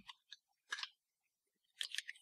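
Marker being picked up and handled over paper: a few faint, short scratchy clicks, the last one near the end.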